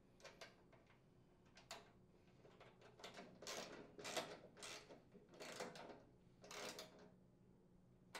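Socket ratchet wrench tightening a nut on a bolt: a few faint clicks, then about six short ratcheting strokes in the second half.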